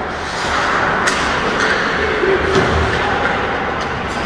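Ice hockey play on an indoor rink: a steady hiss of skating and arena noise with several sharp knocks of sticks and puck, the first about a second in.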